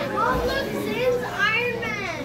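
Young children's voices: excited, high-pitched exclamations and chatter, loudest near the end.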